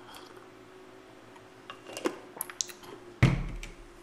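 Quiet room with a few faint small clicks, then a dull thump about three seconds in: a ceramic mug being set down on the desk.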